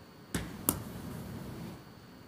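Two sharp knocks about a third of a second apart, the second louder, followed by about a second of rustling as paper bid pages are handled near a desk microphone.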